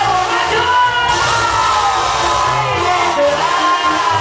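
Live band music with a male lead singer singing into a microphone, holding a long, slowly falling note. The crowd shouts over it.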